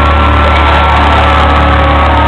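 Live rock band holding a loud, sustained distorted chord, with a high guitar tone held steadily over a heavy low drone.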